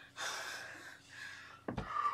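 A woman gasping and breathing out heavily, ending in a short falling blow through pursed lips. A single thump about three quarters of the way through.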